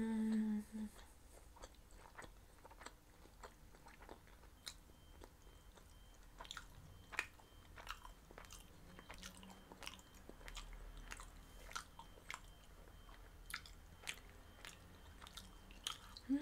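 Close-miked chewing of meatballs and bulgur pilaf: soft, scattered mouth clicks throughout. A short hummed 'mmm' ends about a second in.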